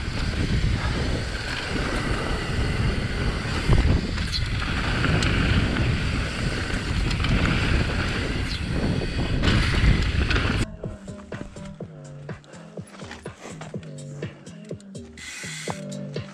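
Riding noise from a downhill mountain bike on a dirt trail: wind rushing over the helmet-camera microphone and tyres on loose dirt, with frequent knocks and rattles from the bike. About ten seconds in it cuts off suddenly and music with a steady beat takes over.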